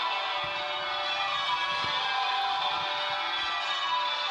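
Westminster Abbey's church bells ringing a continuous peal, many overlapping notes, played back through a tablet's small speaker.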